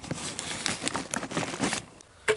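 Irregular rustling and crinkling with many small clicks, the sound of things being handled and moved about.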